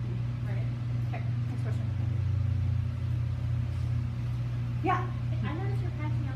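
A steady low hum under faint voices, with a short pitched voice sound about five seconds in.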